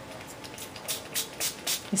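A small pump-spray bottle of Dylusions ink spritzed in a quick run of about five short hisses onto a wet paper tag. The ink spits out unevenly at first.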